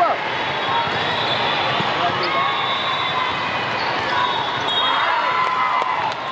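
Indoor volleyball rally: the ball being struck during play, over a steady din of voices filling a large hall.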